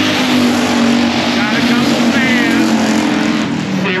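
Race cars' engines running hard as the field circles the track, a loud steady drone that sags slightly in pitch near the end.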